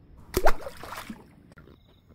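One sudden splash in the water, about half a second in, dying away within about half a second.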